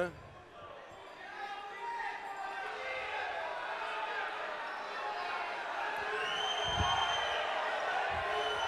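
Many voices of spectators and players talking and calling out together in an indoor sports hall, growing louder after the first second. A long, steady, high whistle sounds about six seconds in, and a low thud comes near the end.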